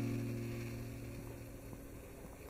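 Acoustic guitar music fading out, its last held notes dying away to a faint background hiss.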